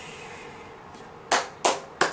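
A person clapping hands: two sharp claps about a third of a second apart in the second half, with a third starting right at the end.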